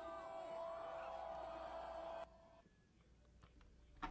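Faint live-concert audio from a phone recording, music with a held tone and voices, that cuts off suddenly about two seconds in, leaving near silence.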